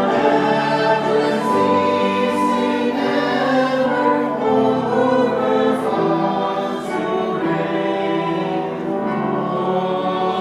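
A congregation singing a hymn together, accompanied by piano, violin and trumpet, in steady sustained notes.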